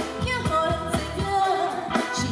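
A woman singing a pop song into a microphone over band accompaniment with a steady drum beat of about four strokes a second, amplified through a stage PA.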